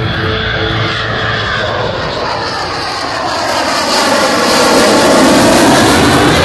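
Jet noise from a Lockheed Martin F-22 Raptor's twin Pratt & Whitney F119 turbofans on a slow pass. The noise grows louder from about three seconds in as the jet comes closer.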